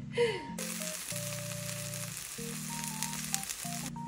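Minari pancake (미나리전) frying in oil in a pan: a steady sizzling hiss with small pops that starts about half a second in and stops just before the end. A child laughs briefly at the start.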